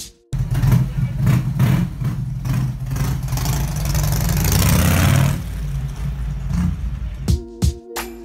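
A motorcycle running past on the road: its engine cuts in suddenly, grows louder to a peak about four to five seconds in, then fades, and stops abruptly near the end.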